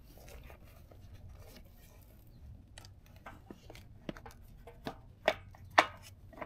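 A fuel-tank dash panel being handled and set onto a Harley-Davidson motorcycle's tank: faint rubbing, then a run of light clicks and taps, the two sharpest near the end as the panel is pressed down into place.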